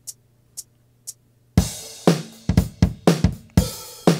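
Acoustic drum-kit samples (kick, snare and cymbals) from an Akai MPC sequence playing back at 90 BPM. A couple of faint clicks come first, and the beat starts about a second and a half in.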